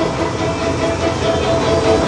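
Dark-ride soundtrack: a steady, train-like rumble with music playing under it.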